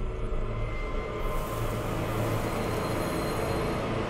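Cinematic logo-sting sound design: a sustained low rumbling drone, with a hissing swell rising over it about a second in.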